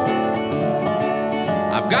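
Two acoustic resonator guitars playing a country-blues tune. A Brazilian rosewood Scheerhorn is played lap-style with a steel bar over the rhythm of a National Pioneer RP1 resonator guitar. Singing comes in right at the end.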